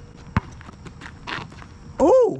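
A basketball bouncing once on an asphalt court about a third of a second in, the last bounce of a dribble before a shot, followed by a short rustling noise about a second later.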